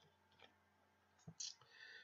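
Near silence: room tone, with one faint click a little past halfway.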